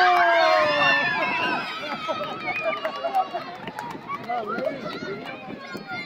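A crowd of onlookers, many of them children, shouting and cheering. Several high voices at once are loudest at the start and for about two seconds, then the noise settles into excited chatter.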